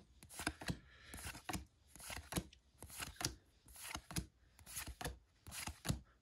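Pokémon trading cards flipped through by hand one at a time, each card slid across the stack with a short quiet scrape or flick, about two a second.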